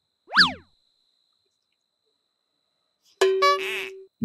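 Cartoon-style comedy sound effects: a quick boing-like swoop that shoots up in pitch and drops back down about a third of a second in, then near the end a click and a short held musical note.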